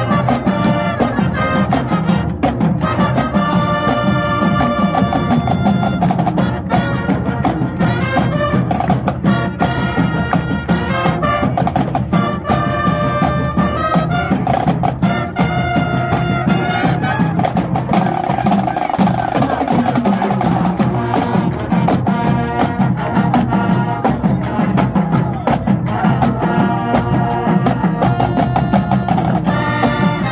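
Two high school marching bands playing together as one large band: trumpets, trombones and sousaphones over a drumline of snare and bass drums, loud and steady throughout.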